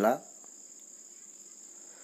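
A steady, high-pitched chirring of crickets, faint and unbroken. The last word of a man's speech ends just at the start.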